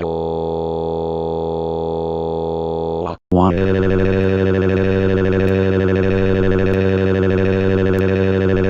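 Cepstral David text-to-speech voice synthesizing a crying wail: a robotic, dead-level held note for about three seconds, then, after a brief break, a second held note that swoops up at its start and then stays flat on one pitch.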